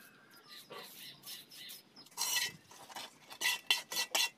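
Wet cement mortar being worked with a steel trowel against a metal mortar pan: soft scraping at first, a louder scrape about halfway, then a quick run of sharp metallic scrapes and clinks, three or four a second, near the end.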